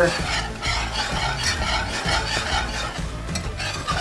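Wire whisk stirring thick pepper gravy in a cast iron skillet, in irregular wet strokes, with the gravy simmering and sizzling softly as it reduces.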